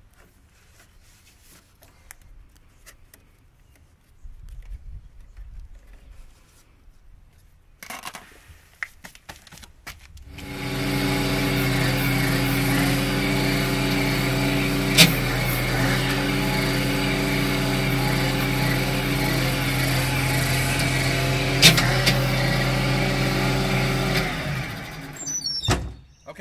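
Bobcat skid steer running its hydraulics to work an SG60 stump grinder: a loud, steady mechanical drone that starts about ten seconds in and stops near the end, with two sharp clicks partway through. Before it starts, only faint clicks of wire connectors being handled.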